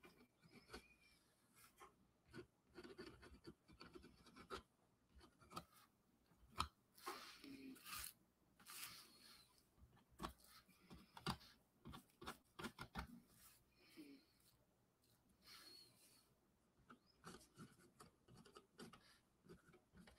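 Faint scratching and tapping of a marker tip on a drawing board, in short irregular strokes and dabs as white highlights are drawn.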